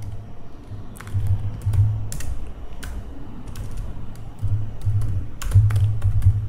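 Computer keyboard typing: scattered keystrokes in two short runs, about a second in and again near the end, as the word "staticmethod" is typed into a code editor.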